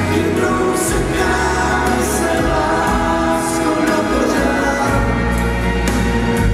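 Live band music: several voices singing together over electric keyboards, with sustained low bass notes underneath.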